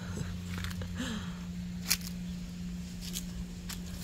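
Raspberry leaves and canes rustling, with a few sharp clicks, as hands and the camera push in among the plants. A steady low hum runs underneath.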